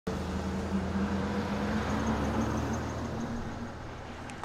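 Car driving along a road: a steady engine hum with road noise that slowly fades down.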